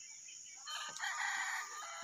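A rooster crowing once, a call of about a second starting a little before the middle, over a steady high-pitched buzz of insects.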